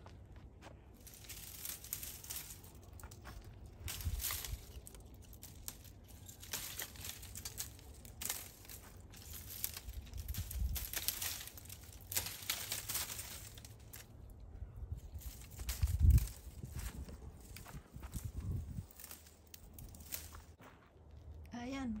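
Dry, withered bottle gourd vines being cut with pruning shears and pulled off a wire trellis: brittle leaves and stems crinkle and crackle, with scattered sharp clicks. A dull thump comes about 16 seconds in.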